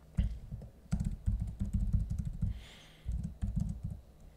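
Typing on a computer keyboard: quick runs of keystrokes, with a short pause a little past halfway.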